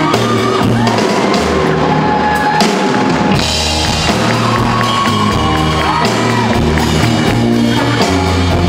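Live rock band playing loud in a large hall: electric guitar and drums under a sung melody line.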